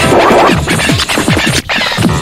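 Early-1990s hardcore rave music in a DJ mix: a fast run of short bass drum hits that fall in pitch, with a scratch-like burst of noise in the first half second and a brief drop in the sound about a second and a half in.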